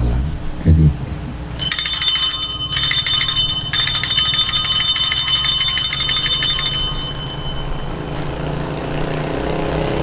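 Altar bells (sanctus bells) shaken at the elevation of the host during the consecration, a rapid jingling ring in three bursts. The last and longest burst stops a few seconds before the end.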